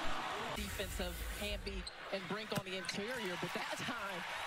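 Basketball game broadcast audio, low in the mix: a commentator talking over arena noise, with a basketball bouncing on the court.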